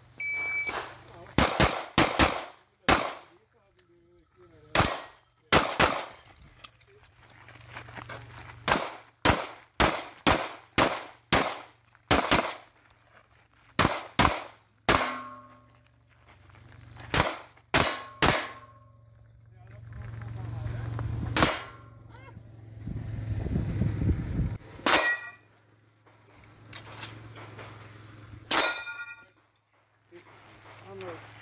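A shot timer's start beep, then a handgun stage of fire: more than twenty pistol shots in quick pairs and strings with pauses between, a few followed by a short ringing tone like a hit steel target.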